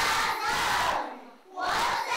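A class of children reading aloud in unison, many young voices chanting a text together, with a short break about a second and a half in.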